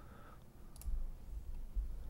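A single faint computer mouse click a little under a second in, over a low background rumble.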